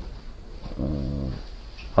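A man's quiet, drawn-out hesitation sound, a voiced "uh" held for under a second, between phrases of speech.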